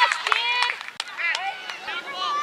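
Several high voices of spectators and players shouting and cheering at once, with a few sharp claps; loudest at the start and dying down within the first second.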